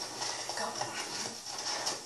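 Boxing gloves striking focus mitts in a quick, irregular series of sharp slaps, heard through a television speaker.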